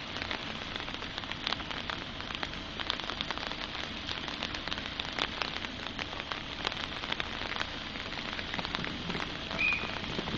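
Steady rain falling on wet paving, with many individual drops clicking sharply. Near the end comes a brief high-pitched tone.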